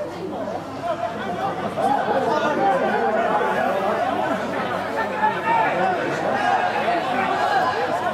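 Several voices talking over one another in indistinct chatter, growing louder about two seconds in.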